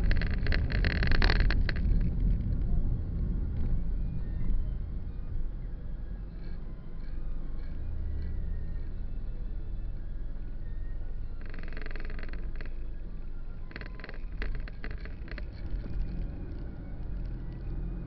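Car cabin noise while driving in city traffic, heard through a dashcam's microphone: a low rumble of engine and tyres, with rattling in the first couple of seconds. Midway the car slows behind another vehicle and the rumble settles into a steady low hum, and a few short rattles or knocks follow later.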